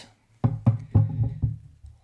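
Fingers tapping out a quick, uneven run of light knocks, starting about half a second in and fading out toward the end.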